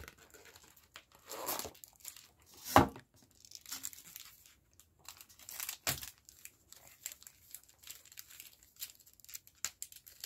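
Foil wrapper of a Pokémon TCG booster pack being torn open and crinkled by hand, in a run of irregular rips and crackles, the sharpest about three seconds in.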